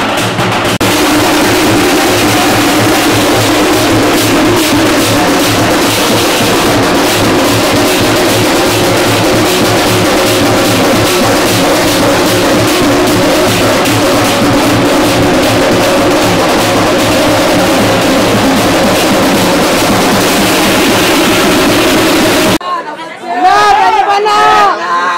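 Street drum band beating loudly and continuously over a shouting crowd. Near the end it cuts off abruptly, and whistles and cheering follow.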